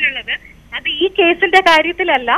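A woman speaking Malayalam over a telephone line, with the thin, narrow sound of a phone call and a brief pause about half a second in.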